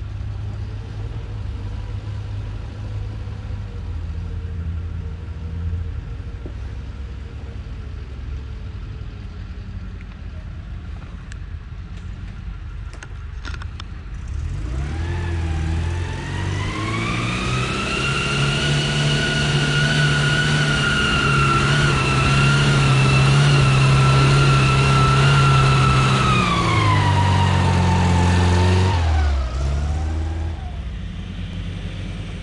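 Off-road vehicle engine running at low revs, then about halfway through revving up hard and holding high revs with a loud, high whine, before easing off near the end.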